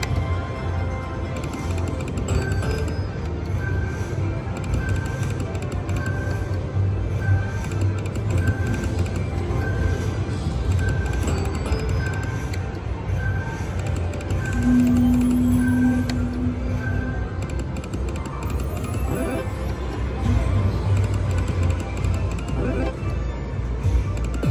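Electronic game music and sound effects from a Lucky Nuggets video slot machine as its reels spin, over the steady din of a casino floor. A short high beep repeats about once a second for much of the stretch, and a held low tone sounds for a couple of seconds past the middle.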